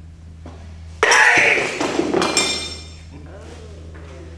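A karate hand strike breaks a concrete slab laid across two drinking glasses about a second in: a sudden sharp crack and clatter, with a high glass ringing that fades over the next second or so. The slab came down on one glass without breaking it.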